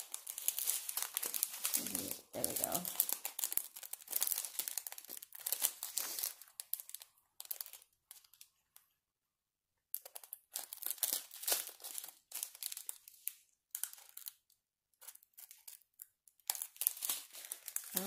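Small plastic bags of diamond-painting resin drills crinkling as they are handled and sorted through, in uneven bursts with a short break of near silence about nine seconds in.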